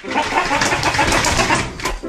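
Plastic duck push toy clattering as it is pushed across a wooden floor, a dense run of rapid clicks and rattling.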